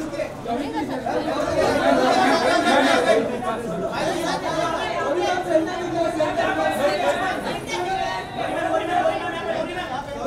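Crowd chatter: many voices talking and calling out over one another without a break, the clamour of paparazzi photographers directing guests posing for pictures.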